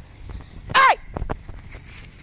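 A child shouts "Hey!" once, high-pitched, a little under a second in, followed by a few short thuds of running footsteps on grass.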